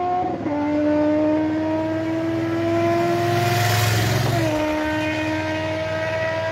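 A motor vehicle engine droning at a steady pitch that creeps slowly upward and drops sharply twice, once right at the start and again about four and a half seconds in. A rush of traffic noise swells in the middle.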